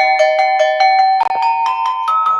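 A set of graded hand-hammered Kutch copper bells on a wooden board, struck one after another with a wooden mallet to play a quick tune. There are about five strikes a second, each bell ringing on under the next.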